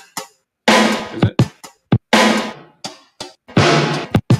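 A sampled drum loop playing back from a sampler app: a heavy hit with a long, noisy decay repeats about every one and a half seconds, with shorter sharp hits in between. It comes in after a brief gap near the start.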